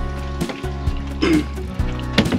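Background music with a steady beat over held chords.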